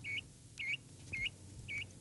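A small animal's high chirp, repeated four times about half a second apart, each note dipping and then rising in pitch.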